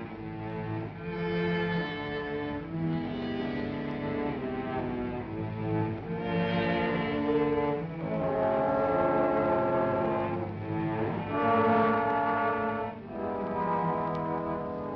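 Orchestral film score led by bowed strings, with low strings prominent, playing sustained chords that change every second or two and swell louder in the second half.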